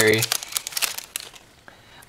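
Foil booster-pack wrapper crinkling in the hands as the pack is opened: a quick run of crackles that dies away after about a second.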